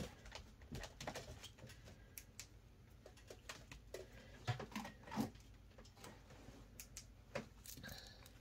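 Faint, scattered rustles and soft clicks of a stack of paper banknotes being handled by hand, with a few slightly louder ticks around the middle and near the end.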